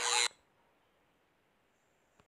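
A brief burst of edited-in noise in the first quarter second, cutting off abruptly, then near silence.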